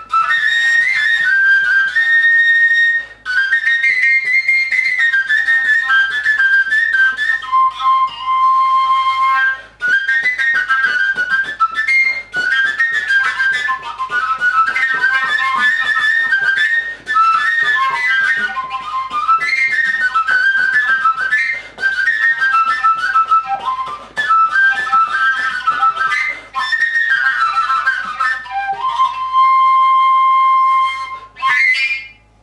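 Telenka, a Slavic wooden overtone flute with no finger holes, playing a quick folk melody drawn only from the overtone series. The notes jump among high overtones and stop briefly for breath every few seconds.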